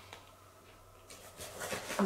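Faint room tone for about a second, then soft rustling and light knocks of things being handled and moved, growing a little louder toward the end.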